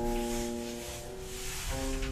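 Otis lift's electronic chime sounding two sustained notes, the second about a second and a half after the first, each fading slowly.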